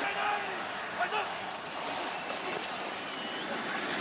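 Steady stadium crowd noise from a football game broadcast, with faint snatches of voices.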